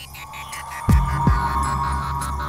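Dramatic TV-serial background score: a held high tone swells in over a steady low drone, and two deep bass booms drop in about a second in, less than half a second apart.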